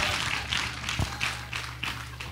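A congregation applauding: scattered hand clapping, with one low knock about a second in and a steady low hum underneath.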